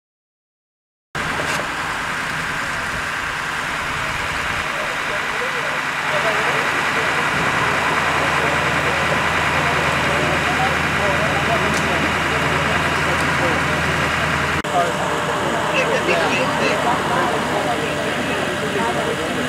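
A vehicle engine idling steadily, with several people talking indistinctly over it. It starts about a second in, after silence.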